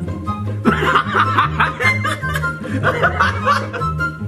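A man and a woman laughing over background music with a steady bass line. The laughter breaks out a little under a second in and runs in bursts until just before the end.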